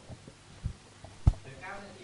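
Two dull, low thumps about two thirds of a second apart, the second one louder, followed by faint voices near the end.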